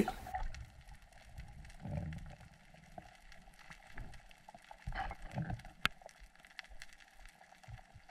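Faint, muffled underwater sound: low swishes of water movement about two seconds in and again around five seconds, with scattered small clicks and one sharper click near six seconds.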